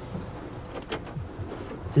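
Oysters sizzling on a barbecue grill, steaming in their own juices, with a few light clicks of shell as a top shell is lifted off with a towel.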